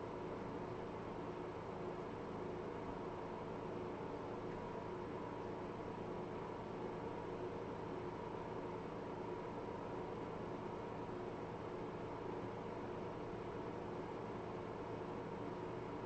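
Faint steady hiss with a low constant electrical hum: the room tone and noise floor of a desk microphone, with no music or speech.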